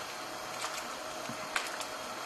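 Quiet steady hiss from a gas stove and a pot of hot water, with a few light clicks of a metal slotted skimmer against the stainless steel pot about one and a half seconds in, as whole eggplants are pushed down under the water.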